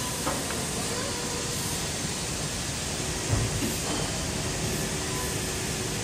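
Steady broad hiss of workshop background noise, with a faint knock about a third of a second in and another a little past three seconds.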